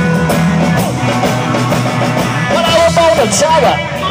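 Live rockabilly band playing between sung lines: upright bass and guitar keep a steady beat, and a voice comes in over them in the second half.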